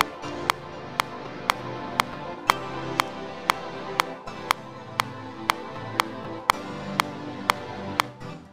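Many layered synthesizer chord and pad instrument tracks playing back together in a DAW, with a sharp tick on every beat, two a second. It is a CPU load test with all the tracks sounding at once, and it is handling well.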